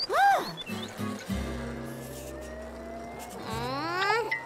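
Cartoon background music with sound effects. A loud, short pitched call rises and falls right at the start. It is followed by a steady low drone with a thin tone slowly climbing over it, and a quick upward glide near the end.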